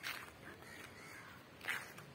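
Two short bird calls, one right at the start and a louder one about a second and a half later, over faint outdoor background noise.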